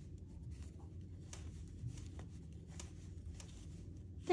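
Faint rubbing and light ticking of wooden circular knitting needles and yarn as stitches are purled, with a few soft clicks scattered through.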